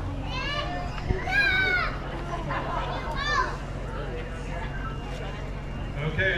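A crowd of children chattering, with three high-pitched calls from kids, the loudest about a second and a half in.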